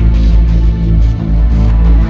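Background music with a deep, sustained bass under held electronic tones.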